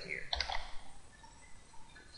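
A few keystrokes clicking on a computer keyboard, mostly in the first second.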